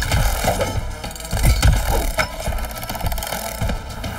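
Cartoon action music under mechanical sound effects: clanks and rattles of a telescoping robotic claw arm as it shoots out and grabs.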